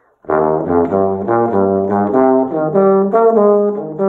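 Bass trombone with independent F and G-flat valves playing a fast bebop line in the low register: a quick run of separate notes on the A-flat major scale starting on E flat, beginning about a third of a second in. The notes sit lower in the first half and climb higher in the second.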